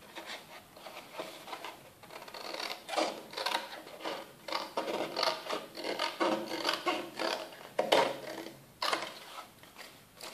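Small scissors snipping through kraft cardstock in a run of short, irregular cuts. The card rustles as it is handled.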